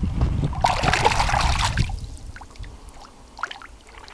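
Carp splashing in shallow water, loudest over the first two seconds, then dying down to a few small splashes.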